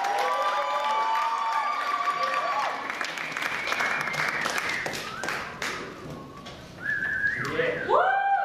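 Audience applause with whooping and whistling calls, dense at first and thinning out after about five seconds, with a few voices calling out near the end.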